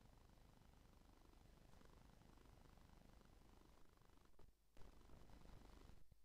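Near silence: faint steady background noise, with a brief drop a little past four seconds in.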